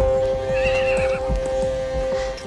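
A horse whinnies once, briefly and wavering, over a film score that holds a steady sustained note.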